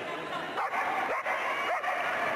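Small dog giving three quick, high yapping barks about half a second apart, over the steady murmur of an arena crowd.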